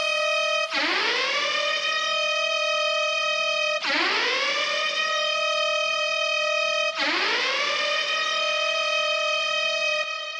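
Siren-like synth tone in an electronic workout track, rising steeply in pitch and then holding steady, sounded three times about three seconds apart with no beat underneath.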